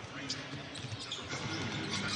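Basketball being dribbled on a hardwood arena court, a few sharp bounces over a steady murmur of crowd and voices.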